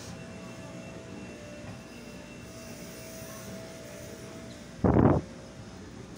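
Steady background hum of a large store interior, with a faint steady tone for a few seconds. About five seconds in comes a short loud burst of noise, the loudest thing here.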